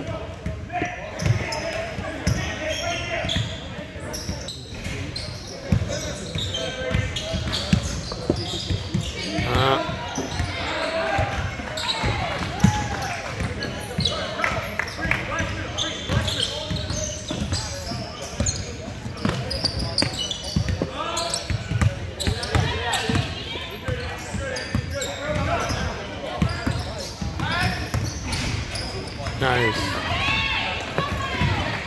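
Basketball bouncing and dribbling on a hardwood gym floor during play, the thuds echoing in a large hall, over indistinct voices of players and spectators.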